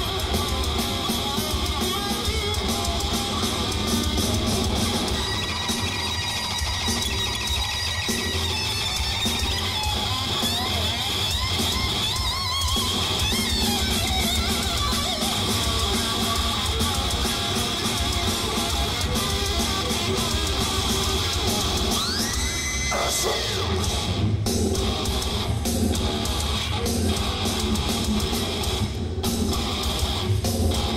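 Heavy metal band playing live at full volume: distorted electric guitar over bass and drums. About three quarters of the way through, a squealing guitar note swoops up in pitch and then dives down.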